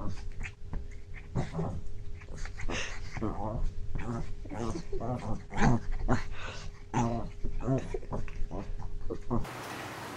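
A small dog's short, repeated growls and yaps as it play-fights with a cat. They stop abruptly near the end, giving way to a steady soft hiss.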